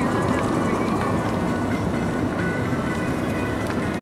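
Steady road and engine noise inside the cabin of a moving car, with a few faint rattles.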